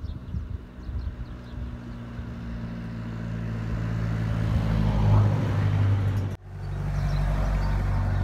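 Low, steady hum of a motor vehicle engine that grows louder for the first five seconds or so, breaks off abruptly about six seconds in, then carries on as a steady low engine hum.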